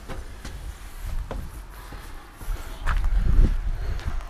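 Wind buffeting the microphone, a low rumble that swells for about a second near the end, with a few soft knocks from walking.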